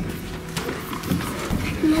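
Footsteps of several people walking, irregular knocks against a wooden floor or stairs.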